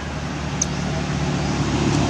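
Steady low hum of a running motor over a rushing background noise, with one brief high squeak a little over half a second in.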